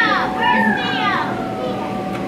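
Children's excited voices: high-pitched exclamations and chatter that slide down in pitch, over a steady background hum.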